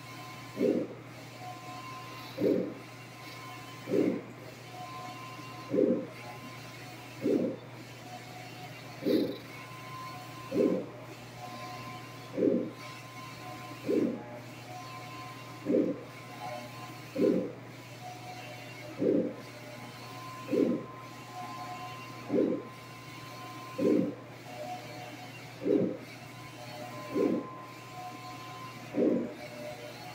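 Turbojet UV 1802 roll-to-roll UV printer running a print job, its print-head carriage shuttling back and forth across the media: a steady hum under a short, low knock that repeats about every 1.7 seconds.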